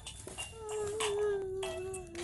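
An elderly woman crying aloud in one long, drawn-out wail that starts about half a second in.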